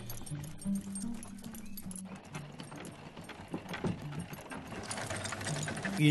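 Horse hooves clip-clopping with clinks of harness over soft music with low held notes.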